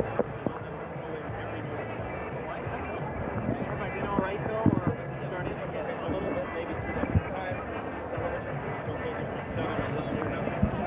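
Indistinct background voices over a steady din, with a few sharp knocks and faint music underneath.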